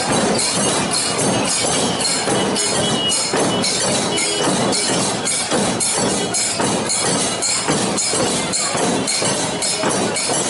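A crowd of mourners beating their chests (matam) in unison, a steady rhythm of about two strikes a second, over the noise of the crowd.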